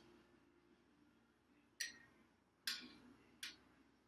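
A metal utensil clinks sharply against a stainless steel stockpot three times in the second half, each clink ringing briefly, as tea bags are lifted out of the brewed tea. Between the clinks it is near silent.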